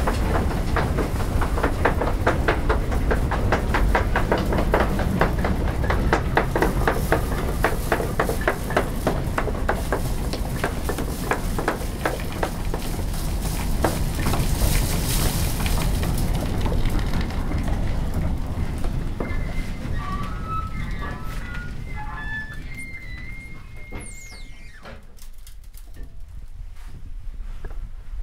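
Working grain mill machinery running: a fast, even rhythm of clattering knocks over a low rumble. It fades away over the last several seconds.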